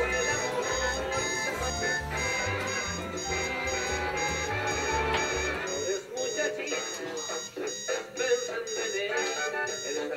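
Background music over an alarm clock beeping repeatedly, left ringing because its sleeping owner will not wake. The music's bass drops out about six seconds in.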